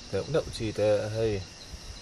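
A steady, high-pitched chorus of night insects in the forest, with a man's voice talking over it for the first second and a half.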